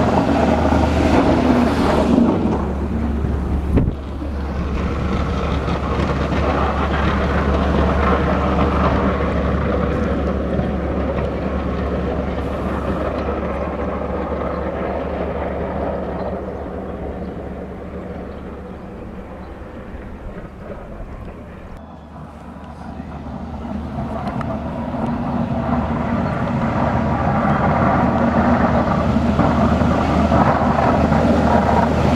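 A road-salt dump truck's engine and tyres passing close, loud at first, then fading as it drives away and building again near the end as a truck comes back toward the listener.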